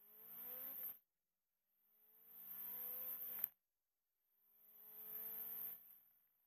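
Honda H22 engine of a drag-racing CRX revving up under acceleration in three short pulls, each fading in with its pitch rising and then cutting off abruptly into dead silence between them.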